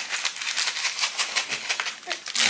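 A small plastic packet of dried seasoning flakes shaken rapidly over instant yakisoba noodles: a quick, dry, rattling crinkle.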